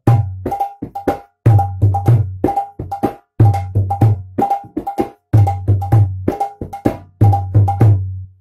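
Bengali mridanga (khol) played by hand in the pattern "dha – dher ta ge ge te, dhar – dhe ta ga ga te", without extra strokes. Deep ringing bass strokes on the large head alternate with sharp, ringing treble strokes on the small head. The phrase starts over about every two seconds, and the last bass stroke rings out at the end.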